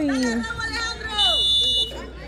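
A single referee's whistle blast, a steady high shrill tone lasting under a second, coming a little over a second in after men's shouts.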